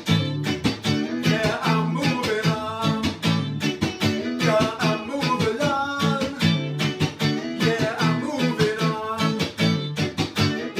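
Amplified hollow-body electric guitar strummed in a steady rhythm, with a man singing over it.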